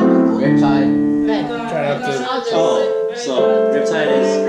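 Digital piano and acoustic guitar playing chords together, the notes changing about once a second, with a person's voice over the music.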